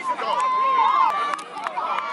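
Several voices shouting and calling over one another on a football field, with one long held call in the first second, and a few sharp claps scattered through.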